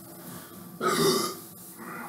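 A man's short, loud burp a little under a second in.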